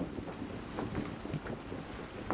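Wind blowing across a wooden ship's deck at sea, a steady rush with a low rumble, with light scattered knocks.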